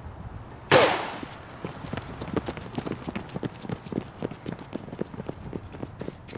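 A starter pistol fires a single sharp shot with a short ringing tail. It is followed by the quick, fairly even footfalls of several people sprinting away on a paved path.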